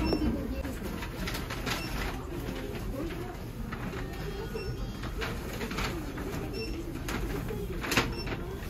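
Self-checkout kiosk giving a few short electronic beeps while it reads a card payment, over a steady wavering shop background.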